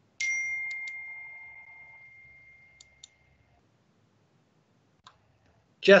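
A single high, bell-like ding that starts suddenly and rings out, fading away over about three seconds, followed by a few faint clicks. A man's voice starts right at the end.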